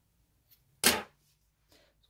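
A single sharp snip of scissors cutting through a double-knit yarn tail, about a second in.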